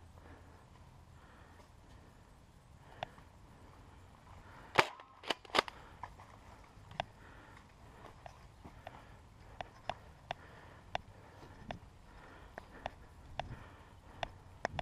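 Foam blaster firing: sharp pops, three loud ones in quick succession about five seconds in. These are followed by lighter clicks at an uneven rate of about two a second.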